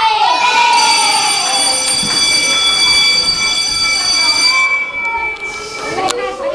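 A steady high-pitched tone, held for about four seconds, with children's voices underneath.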